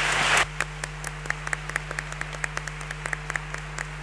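Applause: a dense burst of clapping in the first half-second, then thinning to scattered separate hand claps, a few a second. A steady low electrical hum runs underneath.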